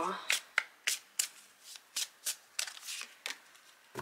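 Oracle card deck being shuffled by hand: a quick run of sharp card flicks and slaps, about four or five a second, which stops a little after three seconds in.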